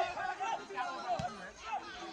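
Indistinct chatter: several people talking over one another close to the microphone, with a single brief knock about a second in.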